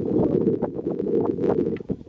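Wind buffeting the camera microphone as a low rumble, with irregular clicks and scrapes of footsteps on rock and gravel.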